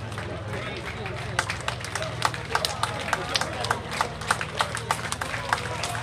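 Spectators clapping for a cyclist approaching the finish line. The claps start about a second and a half in and grow thicker, over a steady low hum and some voices in the crowd.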